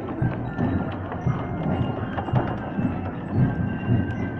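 Wooden handcart with spoked wooden wheels rolling over cobblestones: a rumbling clatter of repeated bumps, about two or three a second.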